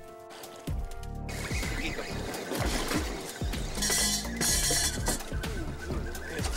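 Background music with held notes at first, then a busier passage with a bright, cymbal-like hiss about four seconds in.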